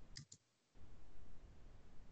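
Two quick computer mouse clicks in close succession near the start, followed by faint steady background noise.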